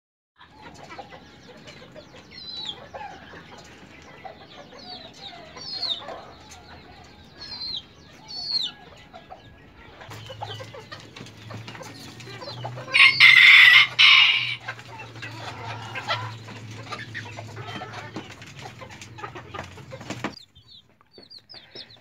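Chickens clucking, with short high chirps through the first half and a loud rooster crow lasting over a second about thirteen seconds in.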